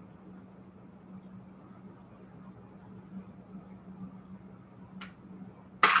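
Faint rustling and scratching of quilted fabric being handled, over a steady low hum, with a sharp click about five seconds in.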